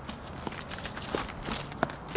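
A few light, irregular footsteps and small taps on a hard floor as a person walks in.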